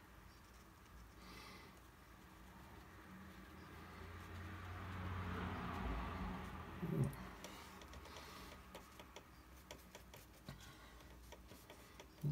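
Faint scraping and dabbing of a small painting tool on watercolour paper. The rubbing grows louder from about four seconds in, with a few light taps near the end.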